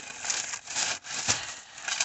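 Shopping bags rustling and crinkling in uneven spurts as someone rummages through them for an item, with a soft knock a little past the middle.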